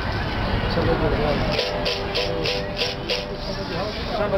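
Berimbau played with stick and caxixi rattle, starting about a second and a half in. The wire is struck in a quick rhythm of about four to five strokes a second, with the rattle shaking on each stroke, and its pitch alternates between two notes.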